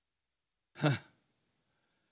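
A man's single short, breathy "huh" voiced close into a handheld microphone about a second in, falling in pitch like a sigh.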